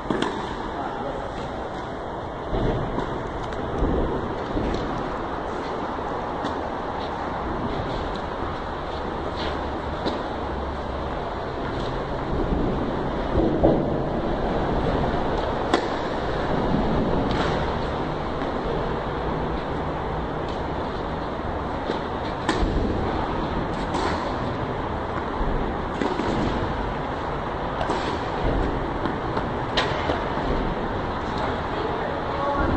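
Tennis racquets hitting the ball during rallies: sharp single pops one to a few seconds apart, over a steady background hum.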